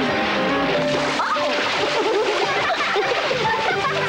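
A cartoon water splash and churning water as an animal drops into a pool, over background music with wavering notes.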